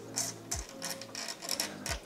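Faint scattered ticks and light scraping of a thin steel lockout cable being handled and fed through the bike's frame and cable clamp.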